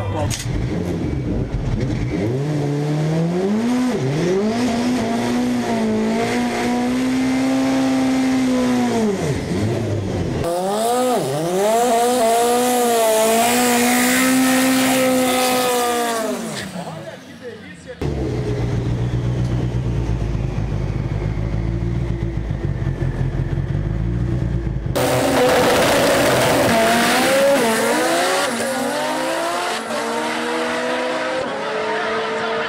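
Four-cylinder Chevrolet Cobalt drag car's engine revving and held at high revs in long pulls, with tyre squeal during a smoky burnout. The sound changes abruptly several times, and dips briefly about 17 s in.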